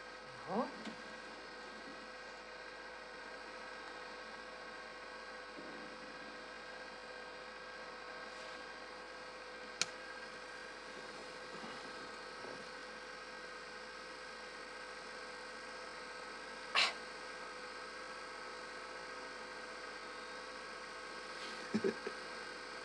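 Faint steady hum and hiss with a constant tone, the background of a quiet room full of electronic equipment. A single sharp click comes about ten seconds in, and a short soft sound comes near seventeen seconds.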